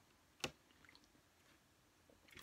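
Near silence with a single short wet click about half a second in, from drinking out of an aluminium energy-drink can.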